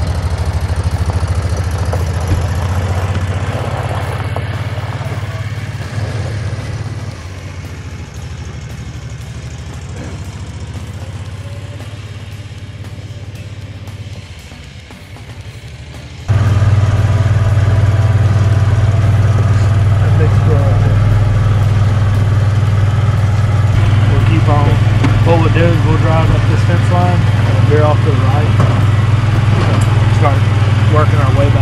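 Kawasaki Mule side-by-side utility vehicle's engine running as it drives off, its steady low drone fading away over about sixteen seconds. Then a sudden cut to the same kind of drone, much louder and steady, heard from on board the moving vehicle, with faint voices over it near the end.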